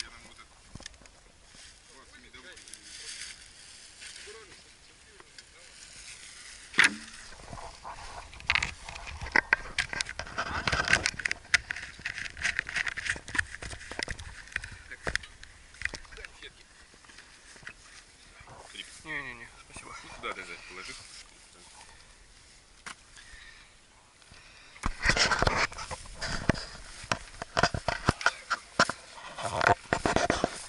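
Rustling and scattered sharp clicks from the camera and gear being handled close to the microphone. Dense flurries come several seconds in and again near the end, with faint voices now and then.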